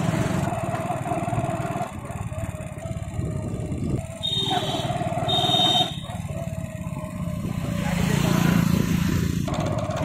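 Motorcycle engine running at a steady road speed, with road and wind noise. Two short high-pitched beeps sound about four and five seconds in, and the engine hum grows louder near the end.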